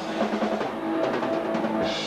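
Rock band playing live on electric guitar, bass guitar and drum kit, with the drums to the fore. About a second in, the drummer plays a quick run of snare hits.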